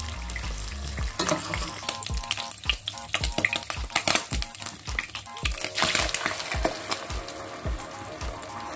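Ground meat and oil sizzling in a hot nonstick frying pan, with a spoon stirring and scraping as the meat is scooped out.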